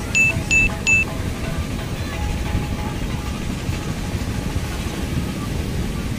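Three quick, bright chimes in the first second, a notification-bell sound effect, over background music and a steady low rumble.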